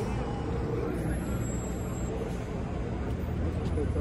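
Low, steady rumble of an idling vehicle engine, with quiet voices talking over it.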